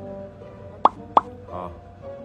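Two quick cartoon-style "bloop" pop sound effects, each sweeping upward in pitch, about a third of a second apart, over light background music.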